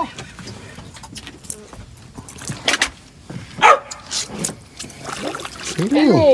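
A hooked gafftopsail catfish thrashing at the water surface as it is reeled in, making a few short, sharp splashes, with a shout of "Ah!" partway through.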